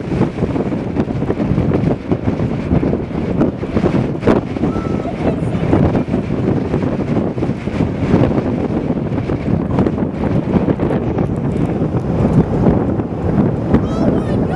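Strong wind rushing and buffeting the microphone in a steady, gusting roar, in the open air near a large tornado.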